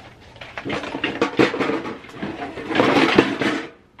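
Empty metal cookie tins being handled and lifted out of a tote: tins and lids clattering and scraping against each other, with a louder stretch about a second in and another near three seconds, plus a few sharp knocks.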